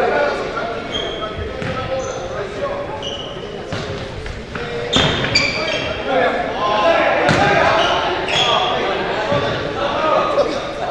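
A futsal ball is kicked and bounces on a hardwood gym floor, a thud every second or two, while sneakers squeak on the boards. Players call out between them, and everything echoes in the large hall.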